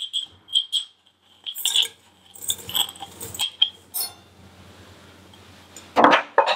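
Light clinks and taps of a small glass jar against a stainless steel mixing bowl while sugar is poured in, a short ringing click at a time, scattered over the first three seconds or so. A faint steady low hum fills the last couple of seconds.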